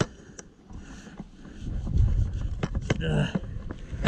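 Spade digging into hard soil with scattered scrapes and knocks, and wind rumbling on the microphone about halfway through. A short voice sound comes near the end.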